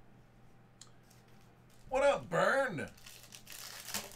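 A short burst of a man's voice about two seconds in, then the foil wrapper of a football card pack crinkling as it is torn open.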